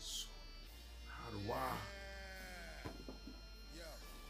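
A man's drawn-out, exclaimed "wow" that falls in pitch, over quiet background music.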